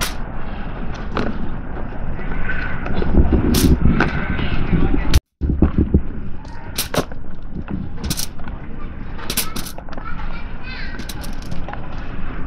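Aluminium foil crinkling with sharp clicks and taps as potato halves are set down on it, over a steady low rumble. The sound drops out for a moment about five seconds in.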